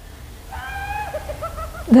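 A high-pitched hooting voice: one held note, then a few shorter wavering notes.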